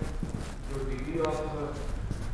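Quiet speech, much softer than the lecture around it, with a few light taps.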